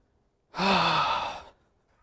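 A man's heavy sigh of frustration after a poor shot, a single breathy exhale with a slight falling voice that starts about half a second in and lasts about a second.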